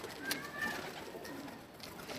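Faint cooing of domestic pigeons in a pause between speech.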